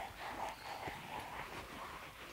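Faint scrubbing of a rubber curry comb rubbed in circles over a horse's coat to loosen dirt and hair, with a few soft knocks.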